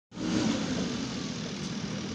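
A JCB 3DX backhoe loader's diesel engine running steadily while the machine works with its front loader bucket raised.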